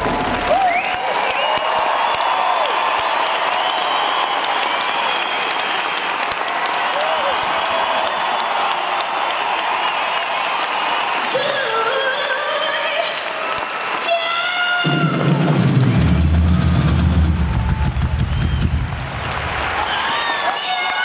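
Large arena audience cheering and applauding with screams as the live band's music stops at the end of the number. About fifteen seconds in, a heavy bass beat starts up under the crowd noise.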